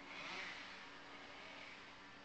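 Faint, steady background noise with a low, steady hum, slowly fading.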